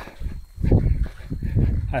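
A runner's heavy breathing close to the microphone, two loud breaths about a second apart.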